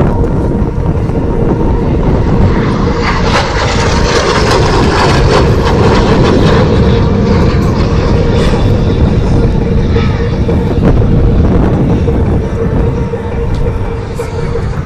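F/A-18 Hornet jet engines running on the ground during a taxi past: a steady whine over a loud rushing noise that eases slightly near the end.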